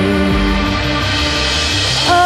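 Live band playing a slow instrumental passage of held chords over a steady bass line, with no singing.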